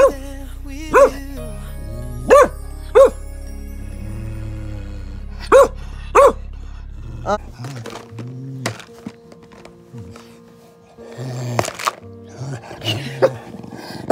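Dog barking in short single barks, about six in the first half and a few more near the end.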